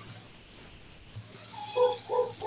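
An animal's short, high-pitched calls, about three in quick succession near the end, heard faintly through a call participant's microphone.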